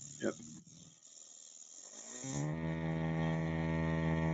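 Taco 007e circulator, running dry with no water in it, going through its anti-seize routine: after a quiet stretch, the motor spins up about two seconds in and settles into a steady high-speed hum. With no water in the pump it runs a lot louder than it would in a filled system.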